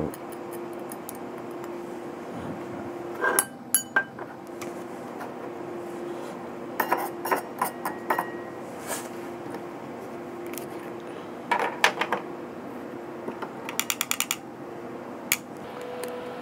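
A metal knife blade scraping and clicking against a small metal vaporizer chamber over a stainless steel ashtray, emptying out spent herb: short bursts of scraping and clinks, with a quick run of about ten light taps near the end as the chamber is knocked clean.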